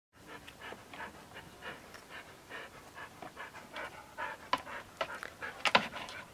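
A 12-year-old husky panting rapidly, about three breaths a second, with a few sharper clicks in the last second and a half.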